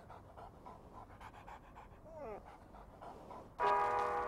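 A large dog panting softly in quick, even breaths. Near the end, music starts suddenly and is the loudest sound.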